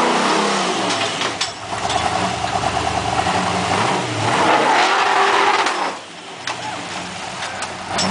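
Propane-fuelled 396 V8 (12:1 compression, roller valvetrain) of a rock-crawler buggy revving hard under load as it climbs a rock ledge, the engine note rising and falling in two long pulls. The second pull, about four seconds in, is the loudest, then the engine drops back to a lower, lighter note.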